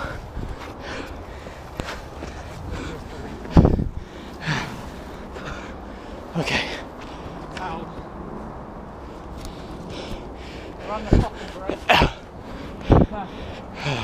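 A person breathing hard and gasping while scrambling up a steep hillside path, with several sharp thumps and rustles close to the microphone, the loudest about three and a half seconds in and three more near the end.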